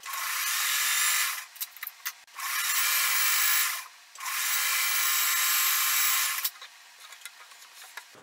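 An electric sewing machine runs in three bursts of one to two seconds each, its motor giving a steady whine as it stitches a patchwork seam. It stops briefly between bursts and falls quiet after about six and a half seconds, leaving only light fabric handling.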